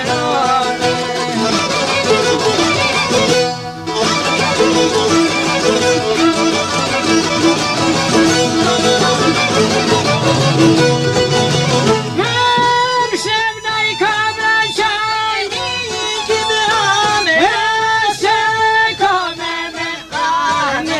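Albanian folk music on string instruments, an instrumental passage with no words. The playing is dense and full at first, with a brief break about four seconds in; from about twelve seconds in a single clear melodic line with bending pitch leads.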